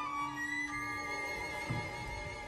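Quiet orchestral music with long held notes and no voices.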